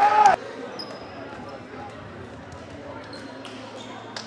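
A shout at the very start cuts off abruptly; then the quieter sound of a basketball game in a gym: a brief high squeak of sneakers on the hardwood about a second in and faint taps over steady hall noise.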